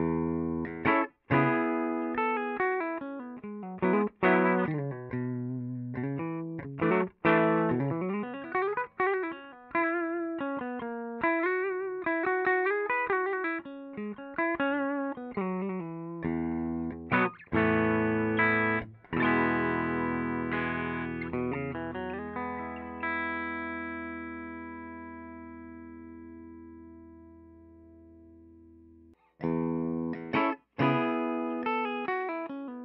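Gibson Les Paul electric guitar played through a Dumble-style amp head into an EVM12L-loaded speaker cab, heard through a large-diaphragm condenser mic: a phrase of picked chords and single-note runs. It ends on a chord left to ring and fade over the last several seconds, then a brief break as the next take begins.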